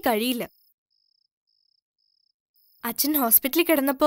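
A woman speaking, breaking off about half a second in, then a gap of near silence with only a very faint high chirp pulsing evenly about three times a second, before a woman's speech resumes near the end.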